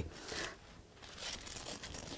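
Faint rustling and scraping of a combat application tourniquet's strap being wrapped and pulled around a thigh over cloth trousers, dipping quieter for a moment a little past half a second in.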